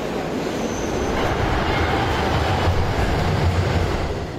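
New York City subway train running, a steady rumble that builds from about a second and a half in, with a brief high whine about half a second in.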